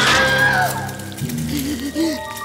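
Cartoon soundtrack of music and sound effects: a sudden loud hit at the start, then gliding whistle-like tones that fall away, and a wobbling voice-like tone in the second half.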